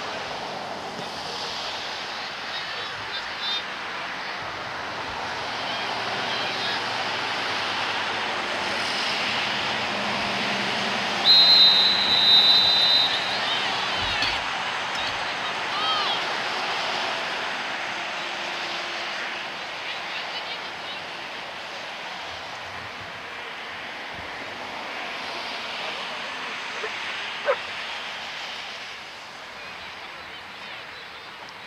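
A referee's whistle blown in one long, high blast about a third of the way in, signalling a stop in play. Around it, a steady open-air hubbub with scattered shouts from players and spectators.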